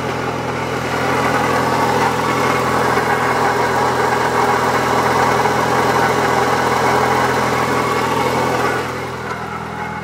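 Mitsubishi 4G63 turbo four-cylinder idling, with a constant grinding from the belt side that rises with revs. It is the sound of a worn accessory pulley bearing, which the owner later traced to the water pump and alternator bearings. The grinding is louder from about a second in and drops near the end.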